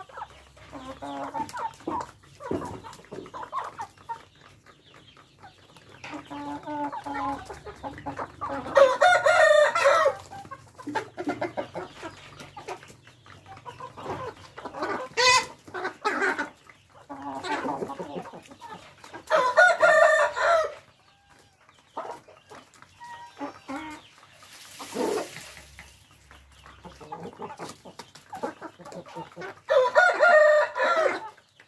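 Vietnamese fighting-cock roosters (gà chọi) crowing: a long, loud crow about nine seconds in, another around twenty seconds and a third starting right at the end. Softer clucking and short calls from the flock fill the gaps.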